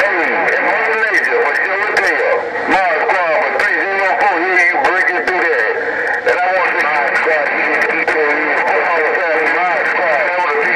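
Voices coming over the speaker of a President HR2510 radio tuned to 27.085 MHz, too garbled for words to be made out, over a steady hiss.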